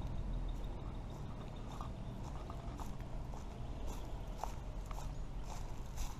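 Footsteps walking over dry leaf litter and sandy ground, about two steps a second, over a low steady rumble.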